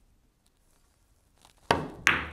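Near silence, then near the end a single sharp click of a cue tip striking the cue ball, played with a little pace.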